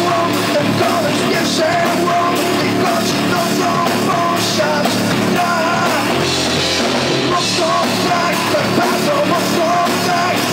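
Rock band playing live in a small rehearsal room: drum kit, electric guitars and a man singing into a microphone, loud and steady throughout.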